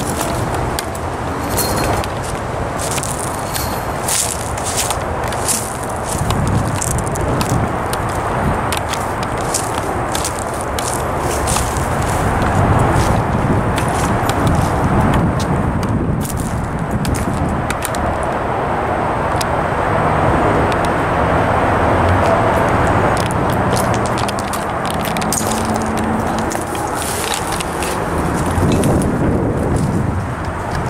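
Steady road traffic rumbling, with footsteps and dry twigs and debris crackling underfoot in many small clicks.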